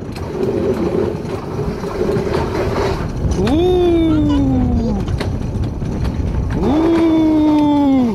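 Alpine coaster sled (the Tobotronc) running fast down its steel tube rails, with a steady rolling rumble and rush. Over it come two long drawn-out vocal cries, about three and a half and about seven seconds in, each rising sharply and then slowly sinking.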